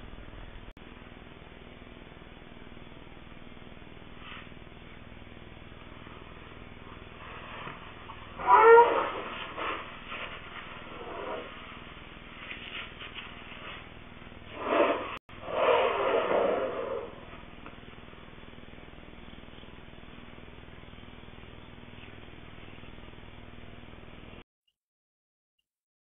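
An animal calling in two bouts, one about eight seconds in and one about fifteen seconds in, each lasting a second or two with a sliding pitch. The calls sit over the steady hiss of a security camera's microphone.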